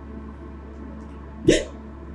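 Soft, steady background music, with one brief tearful vocal catch from a woman, a sobbing half-word, about one and a half seconds in.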